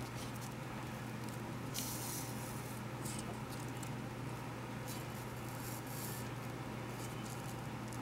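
Faint rustling of grosgrain ribbon and sewing thread being drawn through it by hand, in several short soft strokes, over a steady low hum.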